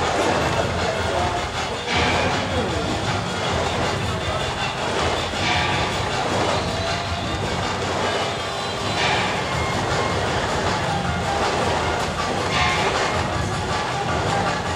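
Loud, steady din of a temple procession crowd: voices over a continuous rattling clatter, with a louder crash about every three to four seconds.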